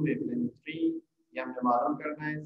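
A man's voice speaking, with a short pause about a second in.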